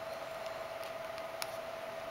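Room tone: a steady hiss with a faint constant hum and a few faint light ticks.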